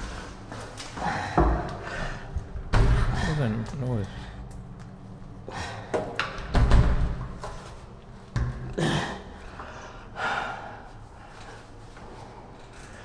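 A few heavy thuds and bangs like doors slamming, about four over the stretch. Between them a voice makes sounds without clear words, one sliding in pitch.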